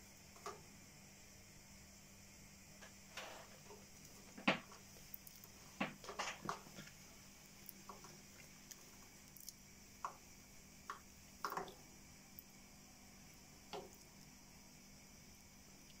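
A cockatiel bathing in a small plastic water dish: scattered small splashes and taps, the loudest about four and a half seconds in, with a quick run of them around six seconds.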